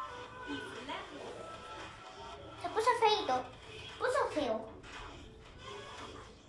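Background music from a TV quiz video, with a voice, plausibly the child's, speaking or calling out twice in the middle.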